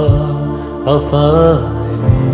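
Song: a male voice sings a wordless note that rises and is held from about halfway through, over a steady low accompaniment.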